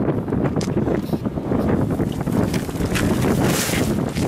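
Wind buffeting the microphone in a steady low rumble, with light handling knocks and a brief hissy rush near the end as a jute sack of peanuts is tipped over onto a plastic tarp.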